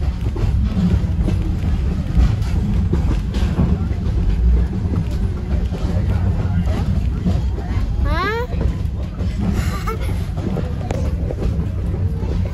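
Steady low rumble of a heritage railroad passenger coach rolling along the track, heard from inside the car. About eight seconds in, a short tone rises steeply in pitch, followed by a brief high hiss.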